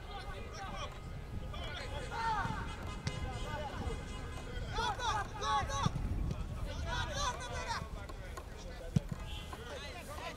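Players and spectators shouting across a football pitch during open play, voices rising in bursts. A few sharp thuds cut through, the loudest near the end.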